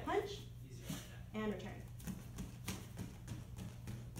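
Two short bursts of a person's voice in a room, then a few soft, irregular taps.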